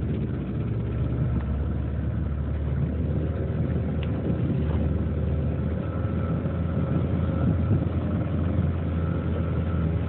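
Small tiller-steered outboard motor driving a boat along at speed: a steady low drone with a faint, steady higher whine above it.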